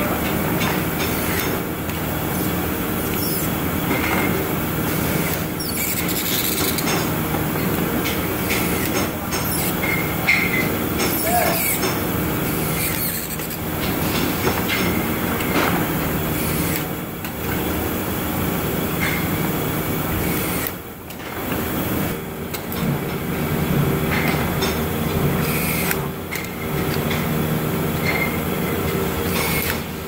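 Loud, steady drone of factory machinery with several low hum tones. Short clicks and clatters break through it every second or two as plastic parts are handled and screws are driven with a handheld electric screwdriver.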